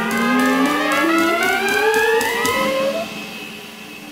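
Big band brass section in a live jazz performance, playing a line that climbs together in short steps for about three seconds. The sound then dies away.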